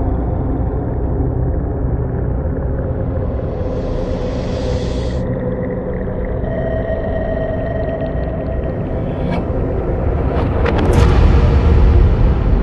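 Dark, droning soundtrack of a deep rumble under long held tones. A high hiss drops away about five seconds in, and crackles and a louder low swell come near the end.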